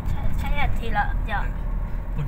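A person talking inside a moving car, over the steady low rumble of the engine and tyres heard from within the cabin.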